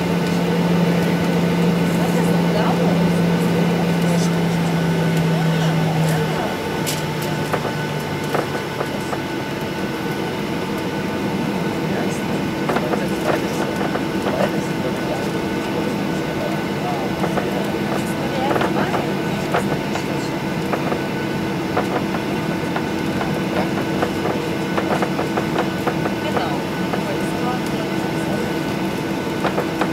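Cabin noise of a Boeing 737-800 taxiing, its CFM56 engines at idle under a steady hum, with light rattles and clicks. A low steady tone stops about six seconds in, and a higher steady tone comes in around ten seconds.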